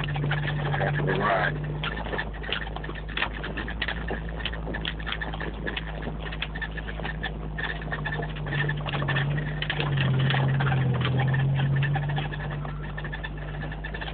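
Jeep Wrangler YJ driving slowly over a rough snowy trail, heard from inside the cab: a steady low engine drone with frequent rattles and knocks from the body and loose parts.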